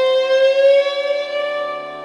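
Electric guitar holding one long sustained note over a low held bass note in a slow rock ballad; its pitch bends slightly upward, then the note fades away near the end.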